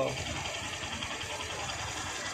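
Small motorcycle engine idling, with a steady fast ticking.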